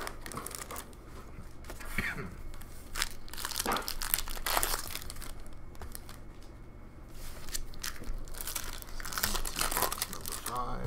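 Foil trading-card pack wrappers being crinkled and torn open by hand in several short bursts, with cards being handled in between.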